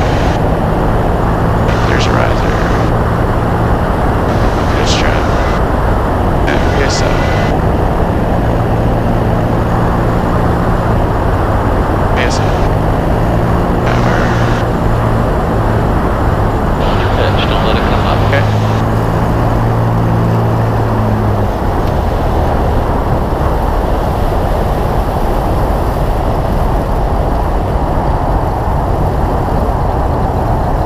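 Light single-engine propeller airplane's engine and propeller drone under heavy wind rush on a short final approach; the engine note drops away about two-thirds of the way through as power comes back for the landing on a grass strip.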